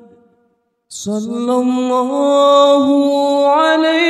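Unaccompanied solo voice chanting a sholawat, a devotional Islamic song for the Prophet Muhammad, in long held notes with no instruments. A held note dies away, and after a brief silence a new phrase begins about a second in, drawn out and stepping slowly upward in pitch.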